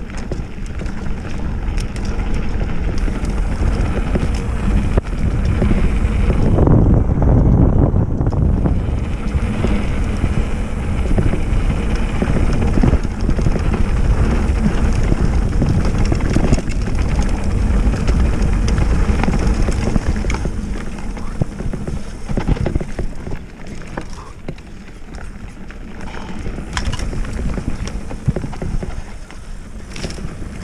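Mountain bike riding fast down a dirt singletrack: rumbling tyre noise and wind buffeting the microphone, with frequent clicks and rattles from the bike over bumps. It grows loudest several seconds in and eases off a while before the end.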